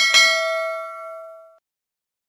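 Notification-bell sound effect: a click and a single bright bell ding that rings and fades away over about a second and a half.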